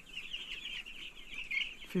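A flock of young broiler chicks peeping, many short high chirps overlapping into a continuous chorus.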